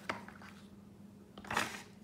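Quiet handling sounds over a faint steady hum: a short click at the start, then a brief rustle about a second and a half in as the silicone sizing tray is moved aside.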